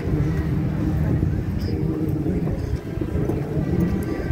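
Low, steady engine rumble of parade trucks moving slowly past, with a steady engine drone rising twice, near the start and about two seconds in, over faint onlookers' voices.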